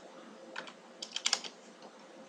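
A few computer keyboard keystrokes: a single tap about half a second in, then a quick run of about four taps just after a second in.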